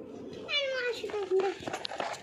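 A child's voice: one drawn-out call, falling in pitch, starting about half a second in and lasting about a second, followed by a few light taps near the end.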